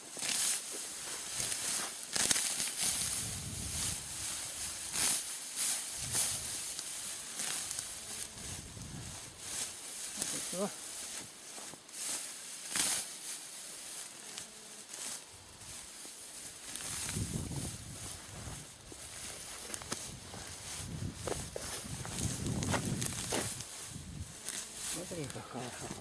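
Dry grass and weeds rustling and tearing as they are pulled by gloved hands while clearing a drainage ditch, in a string of irregular rustles.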